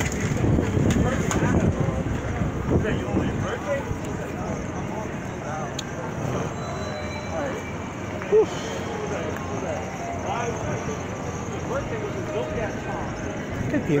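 Busy city-street ambience: a steady hum of traffic with scattered voices of passers-by, and wind buffeting the phone's microphone, strongest in the first couple of seconds. One brief loud sound stands out a little past the middle.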